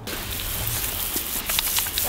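Garden hose spray nozzle spraying water onto a man's hands and the ground: a steady hiss of spray with spattering.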